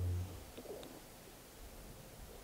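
A man's brief low closed-mouth hum in the first half-second, then a quiet room with two faint clicks.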